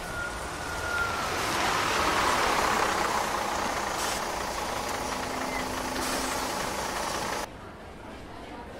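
A bus going by, its engine and road noise swelling over the first two seconds and then holding steady. The sound cuts off abruptly near the end.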